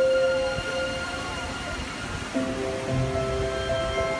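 Show soundtrack music played over loudspeakers during a nighttime fountain show: a held chord fades in the first second, a quieter stretch follows, and new sustained chords come in a little over two seconds in, over a low rumble.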